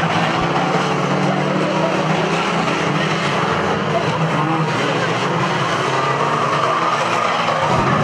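Several 2-litre banger racing cars running and revving together at a steady level, with tyres skidding on the track.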